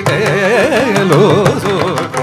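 Carnatic classical concert music: a melody line with fast wavering gamaka ornaments over mridangam strokes.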